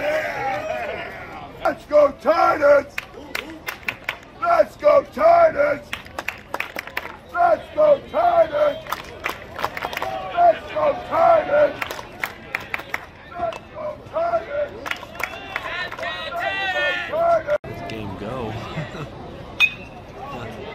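Baseball crowd shouting and chanting in short, repeated calls that come in clusters over a bed of crowd noise, with sharp clicks mixed in.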